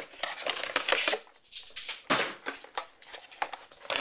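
Cardboard box and packaging being rummaged through by hand: irregular rustling with sharp clicks and light knocks, in bursts with short quieter gaps.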